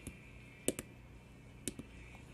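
Tactile push-button switches on a breadboard clicking as they are pressed and released to step the radio's volume down: one click at the start, then two quick double clicks about a second apart.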